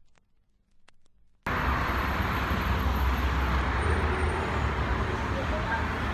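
Near silence with a few faint clicks, then about a second and a half in, steady city street traffic noise cuts in abruptly with a deep rumble.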